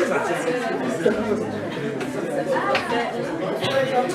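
Audience chatter: many people talking at once in a hall, overlapping voices with no single clear speaker.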